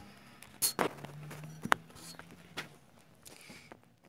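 Handling noise: scattered knocks and clicks with scuffing steps as the camera phone is moved and set in place, with one sharp click about a second and a half in.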